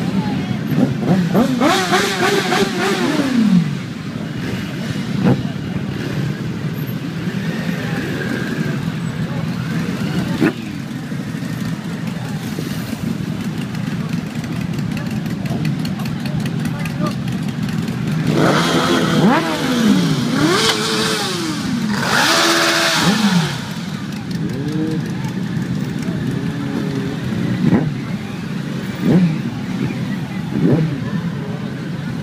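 A crowd of motorcycles idling and creeping along in a dense pack, with riders blipping their throttles: engine revs rise and fall about two seconds in and again twice around twenty seconds in, over a steady drone of idling engines and people talking.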